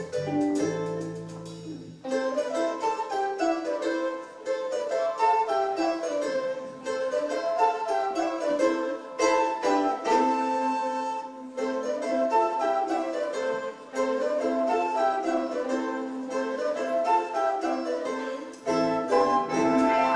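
A charango played solo, picking quick runs of notes that climb and fall again and again with little else underneath. Bass and drums come back in near the end.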